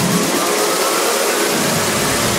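Electronic dance music from a DJ set in a build-up: a loud, even rushing noise sweep over a thin high synth line, with the bass and kick drum cut out.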